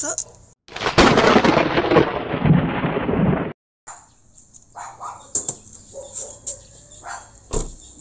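A thunderclap sound effect: a loud, rumbling crash of about three seconds that cuts off suddenly. It is followed by quieter sounds with a few clicks and a sharp thump near the end.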